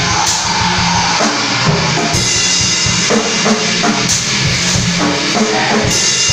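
A live rock band playing loudly: electric guitar over a drum kit, with bass drum hits and cymbals running steadily through.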